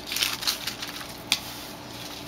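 Handling noise as a wooden-mounted rubber stamp and paper are moved about on the work surface: a brief rustle at the start and a single sharp tap about a second and a quarter in.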